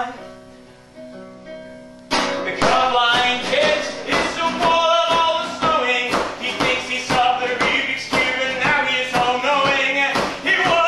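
Nylon-string classical guitar: a chord rings and fades, then about two seconds in loud, fast strumming starts. A man sings without words over the strumming.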